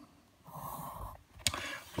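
Pencil scratching softly on paper as a line is drawn along a plastic set square (Geodreieck), followed about one and a half seconds in by a single sharp click as the set square is handled.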